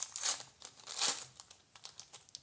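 Foil-lined plastic wrapper of a collector sticker pack crinkling and tearing as it is ripped open by hand, in two louder bursts: near the start and about a second in.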